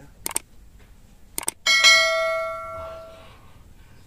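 Subscribe-button animation sound effect: a pair of mouse clicks, another pair about a second later, then a single bell ding that rings and fades out over about a second and a half.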